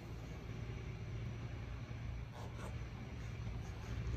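Steady room tone: a low hum under a faint even hiss, with no distinct events.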